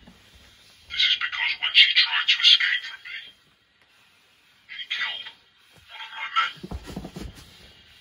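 A person's voice, thin and tinny, in a few short phrases with a pause in the middle, and a brief low thump about seven seconds in.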